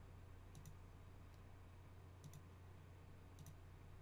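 Near silence: a steady low hum with a few faint, short clicks.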